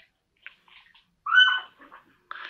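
A dog's brief high-pitched whimper, about a second and a half in.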